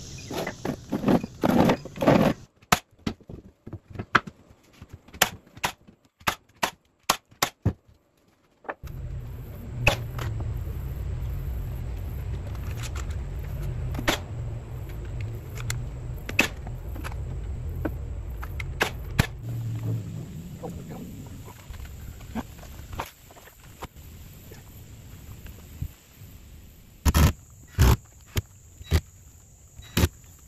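Construction work on wooden concrete forms: a series of sharp knocks and clicks from boards and tools being handled. A steady low rumble runs under it for about a dozen seconds in the middle, and two louder knocks come near the end.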